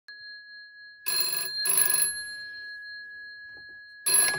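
The bell of an old GPO 332L Bakelite telephone ringing a British double ring: two short rings in quick succession about a second in.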